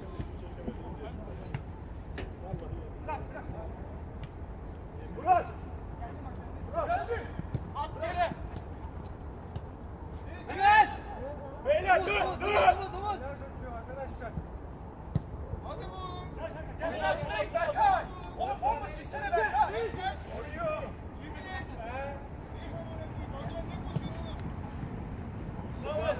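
Men's voices calling out in scattered bursts over a steady low rumble, with a few short knocks.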